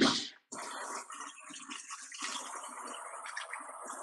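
Spinach mixture sizzling in a frying pan on a gas hob, a steady crackling hiss heard over a video call.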